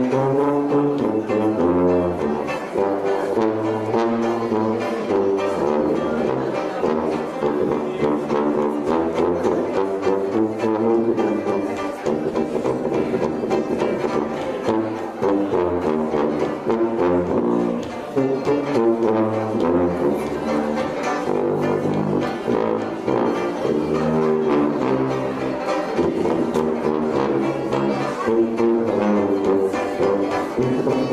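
Hot jazz band playing, horns over a sousaphone bass line that moves note by note underneath.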